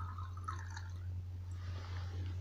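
Faint trickle of a water-alcohol mixture poured from a glass graduated cylinder into a small glass jar of aromatic oil, fading out about a second in, over a steady low hum.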